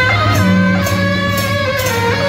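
Brass marching band of trumpets and saxophones playing a sustained melody over a steady percussion beat of about two strikes a second.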